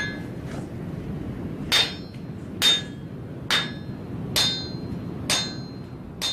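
Five evenly spaced metallic strikes, just under one a second, each ringing briefly like a hammer blow on metal.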